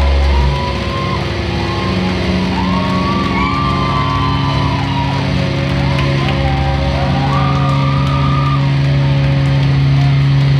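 Rock band playing live: sustained low notes underneath and a higher line of long, bending notes above. The deepest bass drops away about half a second in.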